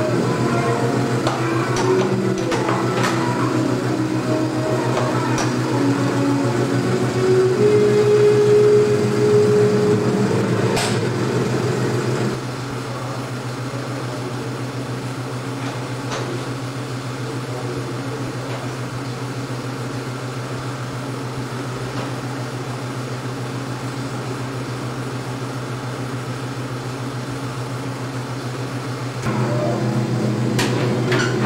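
Steady low running hum of a 35mm Century projector with a burning carbon arc lamphouse. For about the first twelve seconds it carries changing pitched tones, then drops to a plain steady hum.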